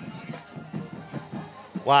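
Music playing in the stadium background during a break in play.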